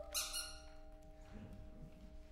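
A short, high squeak just after a sung note ends, followed by a pause in the chamber music with faint held notes still ringing.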